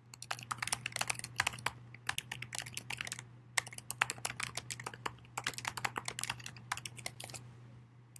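Typing on a computer keyboard: quick runs of keystroke clicks, with a short pause about three and a half seconds in, then more typing that stops shortly before the end. A faint steady low hum sits underneath.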